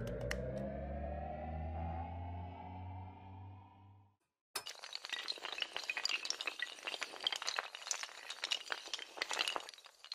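Animated-outro sound effects: a low, slowly rising tone with a deep hum beneath that fades out about four seconds in, then after a brief gap a dense clatter of many small sharp clicks, like a long row of dominoes and tiles toppling.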